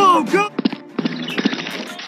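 Animated cartoon soundtrack: two short cries falling in pitch at the start, then a few quick knocks and a steady hiss with a low hum.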